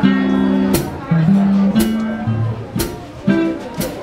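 A live jazz combo playing: electric guitar chords held over electric bass and drums, with a sharp drum or cymbal hit about once a second.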